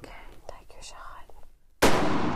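Soft whispered coaching, then a single gunshot near the end: one sudden, very loud report with a long fading tail.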